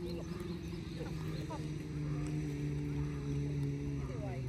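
A steady low engine hum that slowly drops in pitch.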